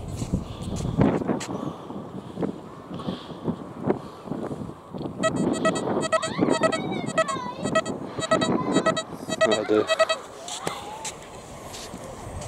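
XP Deus metal detector sounding its target tone over a new £1 coin: a run of quick, high-pitched beeps in clusters from about five seconds in to about ten seconds. The repeated tone is a detection signal for the coin.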